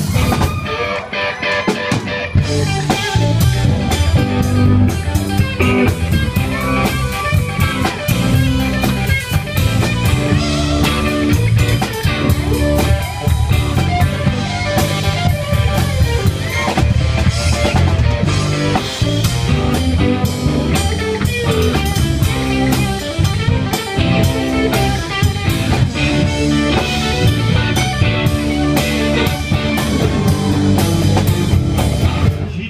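Blues-rock band playing live through an instrumental break: electric guitars over bass and drum kit, with no vocals.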